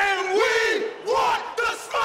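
Four men yelling together in a loud group shout, their voices overlapping, in three bursts with short breaks between.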